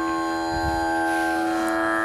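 Carnatic sruti drone holding one steady pitch with many overtones, setting the key before the singing; more upper tones fill in about a second and a half in.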